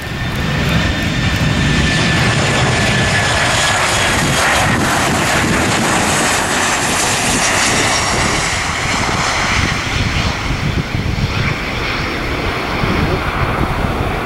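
Boeing 737 airliner's twin jet engines on landing: loud, steady jet noise with a faint whine that falls in pitch in the first few seconds as the plane passes, then continuing as it rolls along the runway.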